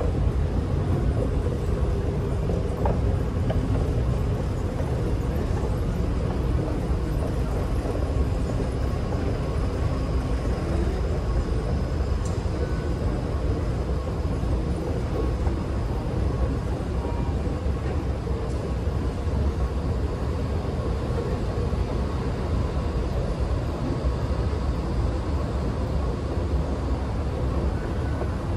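Escalator running steadily: a low rumble with a faint, even hum over the station's background noise.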